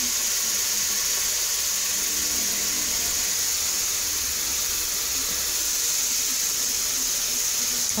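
A steady, even hiss, strongest in the high range, at a constant level.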